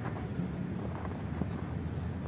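Steady low rumble of open-air background noise with no distinct events.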